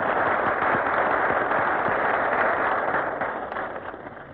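Studio audience applauding, dying away near the end, heard on a very poor-quality old radio recording.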